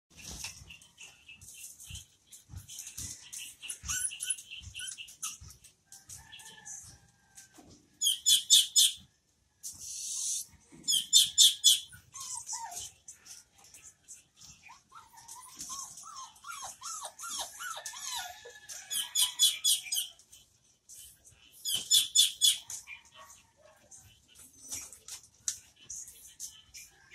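Caged American pit bull terriers whining, the pitch wavering up and down, while held back from their food until given the signal to eat. Repeated loud bursts of fast, high-pitched chirping sound over the whining.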